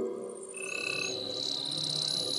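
Electronic TV channel ident sound design: a high, steady synthesized tone with a shimmering edge enters about two-thirds of a second in, over a low sustained hum.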